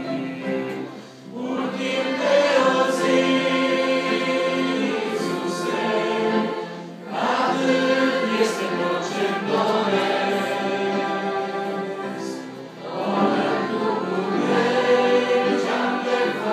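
A congregation singing a hymn together, led by a man on a microphone, in sustained phrases with short breaks between lines about a second in, about seven seconds in and near thirteen seconds in.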